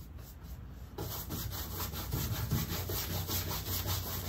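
Paintbrush scrubbing black acrylic gesso onto a stretched canvas in quick, repeated strokes, growing louder about a second in.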